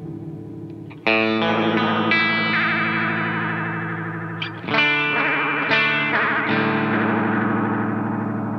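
Strat-style electric guitar played through a JAM Pedals Delay Llama Xtreme analog delay pedal, with overdrive. Echoes of earlier notes are fading at the start. About a second in a chord is struck, and more follow around two, five, six and six and a half seconds in, each trailing echo repeats that warble in pitch.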